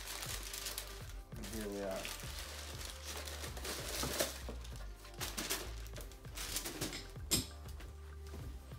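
Shoebox tissue paper crinkling and rustling in irregular bursts as a pair of sneakers is unwrapped and lifted out of the box.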